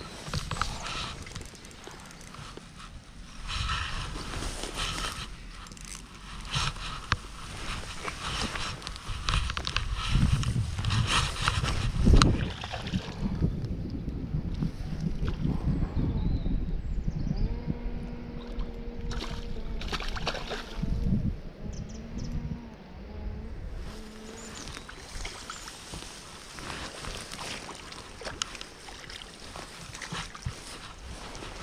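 Rustling of bankside grass, camera handling noise and water splashing from a hooked fish being played at the bank, with a loud bump about twelve seconds in. A low steady hum lasts several seconds after the middle.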